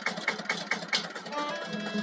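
Violin and acoustic guitar playing a fast Serbian kolo folk dance tune. The guitar's low bass notes drop out for most of the moment and come back near the end, over a quick, even rhythm of strokes.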